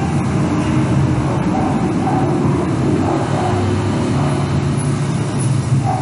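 A steady low rumbling noise, like a motor vehicle or road traffic running close by.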